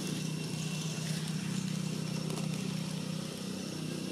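A steady low hum like a running engine, unchanging throughout, with faint thin high tones held steady above it.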